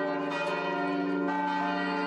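Church bells of the cathedral ringing together in overlapping sustained tones, the mix of tones shifting slightly twice.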